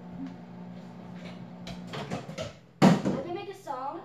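Microwave oven running with a steady low hum that stops about halfway through, followed by a loud clack of its door being pulled open.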